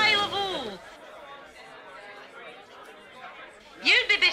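A woman's voice finishes a phrase with a long falling pitch in the first second, then faint chatter of voices in the room.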